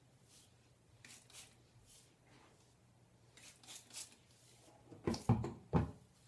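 A hand-pumped trigger spray bottle spritzing water onto hair in a string of short, soft hissing sprays. Near the end come two louder rustling knocks as hands work through the damp hair.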